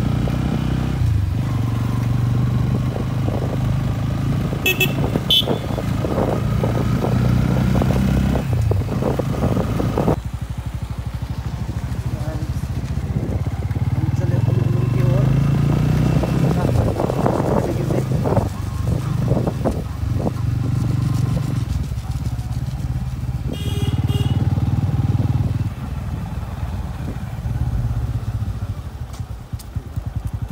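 Bajaj Pulsar N160 motorcycle's single-cylinder engine running under way, heard from the bike, its note rising and falling with the throttle over rushing wind. Two short horn beeps, about 5 seconds in and again about 24 seconds in.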